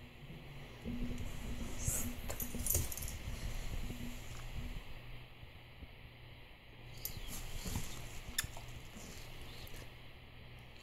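Light metallic jingling and clinks, typical of a dog's collar tags, with rustling as the dog shifts about, over a low steady hum. A few sharp clinks come a couple of seconds in and again near the end.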